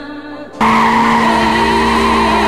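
Kia Stinger drifting, its tyres squealing, coming in suddenly about half a second in and holding steady, over music.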